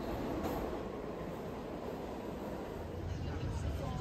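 New York City subway train running through the station: a steady rumble and rail noise. Voices come in near the end.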